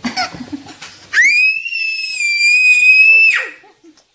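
A toddler's high-pitched scream, one long steady shriek of about two seconds that starts a little over a second in, after a moment of laughter. It is really noisy.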